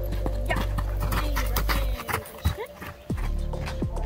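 Hoofbeats of a horse moving over sand and jumping a low pole obstacle, a series of irregular thuds, over background music that drops out for about a second midway.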